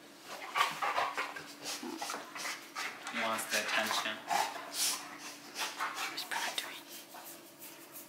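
Dog panting close to the microphone in quick, irregular breaths.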